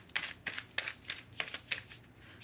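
Tarot cards being shuffled by hand: a quick run of about ten short, irregular card flicks.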